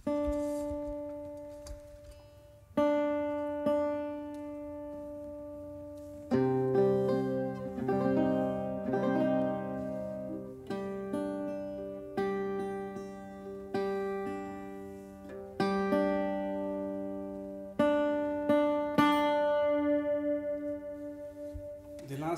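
Portuguese guitar and classical guitar playing together. The piece opens with single ringing plucked notes, grows fuller with lower notes about six seconds in, and near the end has rapidly repeated tremolo notes.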